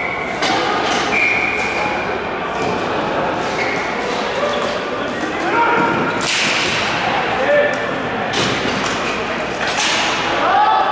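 Ball hockey play in an echoing arena: sharp knocks of sticks and ball, with the loudest hits about six seconds in and again near the end, over a steady din of players' voices. Short high squeaks sound early on.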